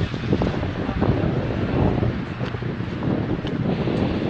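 Wind buffeting a phone's microphone outdoors: a steady, fairly loud rush of noise, heaviest in the low end.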